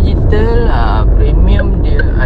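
Steady low rumble of engine and road noise inside the cabin of a Proton X50 being driven, with a brief voice sound about half a second in and a quiet regular ticking starting about one and a half seconds in.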